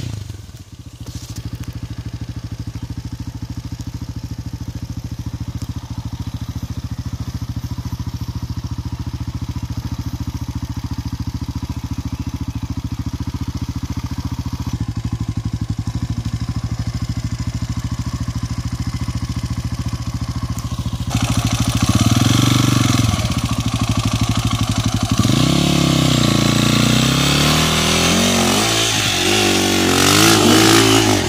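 Dirt bike engine running steadily at low revs, then from about 21 seconds in louder, revving up and down repeatedly as a bike climbs a steep, loose dirt slope.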